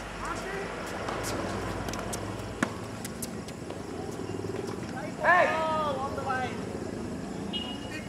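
A person's voice calling out briefly about five seconds in, the loudest sound, over a steady background rumble, with a single sharp knock a little over two seconds in.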